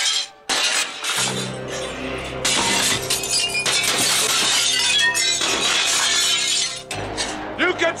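Glass shattering again and again as panes and framed glass in a shop are smashed, over a dramatic music score. A man's voice begins near the end.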